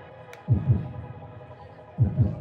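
Electronic club track in a stripped-back passage. A pair of deep kick-drum thumps, each dropping in pitch, lands about half a second in over a quiet held synth chord, and the next pair lands at the very end.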